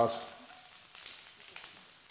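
Sliced carrots sizzling in a very hot wok, a steady hiss that slowly dies down.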